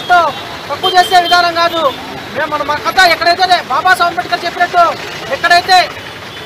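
A man speaking Telugu in a raised voice into a microphone, with only short pauses between phrases.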